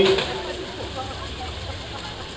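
A man's voice ends its sentence just at the start, then a low, steady outdoor background noise with faint, distant voices.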